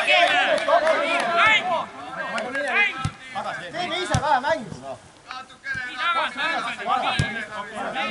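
Football players shouting and calling to each other on the pitch, with several short thuds of the ball being kicked.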